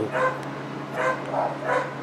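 A small dog barking in short, high yaps, four in two seconds.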